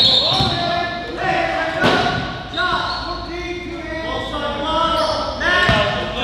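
Basketball bouncing on a hardwood gym floor during play, with indistinct voices echoing in a large gymnasium.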